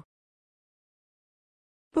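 Near silence: a dead-silent pause between spoken vocabulary words, with a voice ending a word at the very start and beginning the next just before the end.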